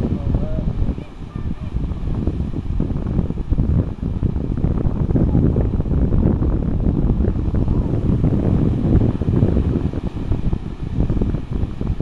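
Wind buffeting the microphone in a steady low rumble, with surf breaking on the shore behind it.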